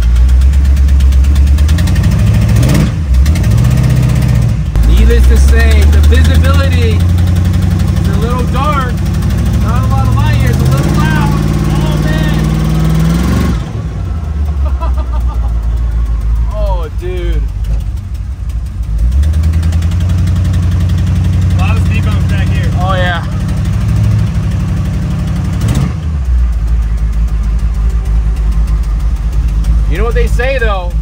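Batman Tumbler replica's engine pulling away in drive, heard from inside the cabin: its note climbs in steps as the car gathers speed and shifts, drops back about 13 seconds in, then climbs again a few seconds later.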